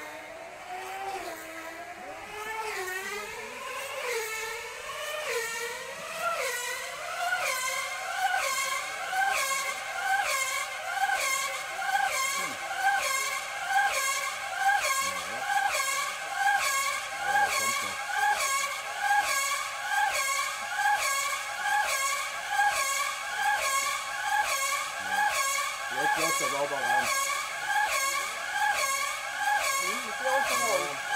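High-revving 2.5 cc two-stroke glow engine of a tethered speed model car running flat out on its circular track. Its pitch climbs over the first several seconds as the car accelerates to around 260 km/h, then holds steady with a rising-and-falling sweep about once a second as the car circles past.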